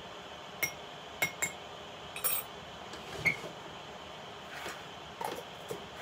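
Light clinks and taps of small glass bottles and jars being handled and set down on a table: about seven separate knocks, one about three seconds in with a short ring.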